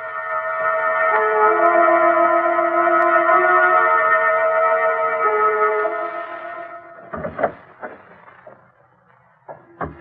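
Radio-drama organ bridge music: sustained held chords over a slowly moving lower melody, swelling and then fading out about seven seconds in. A few brief knocking sounds follow near the end.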